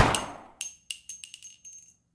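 The rap track's final hit dies away over about half a second, then about six faint, short, bright metallic chime-like tings ring out, the last one shortly before the end.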